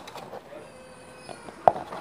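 Handling of plastic cups close to the microphone: a few light clicks and one sharp tap near the end, over a faint steady room background.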